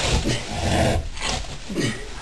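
A large animal in labour groaning low as it strains to push out its young, a long groan in the first second and a shorter one near the end.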